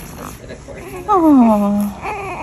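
A woman's drawn-out, falling coo about a second in, gliding down and holding on one low note: the loudest sound. Around it are a newborn's small whimpers and grunts.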